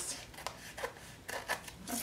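Scissors snipping through card and glued-on tissue paper, trimming off the excess along the edge: a series of short, crisp cuts about half a second apart.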